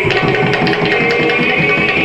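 Live Bhaona accompaniment: a khol barrel drum played in a quick, dense rhythm under a held melody line.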